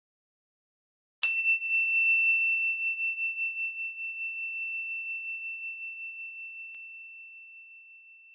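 A single high, bell-like chime struck about a second in, its one clear tone ringing on and slowly fading away.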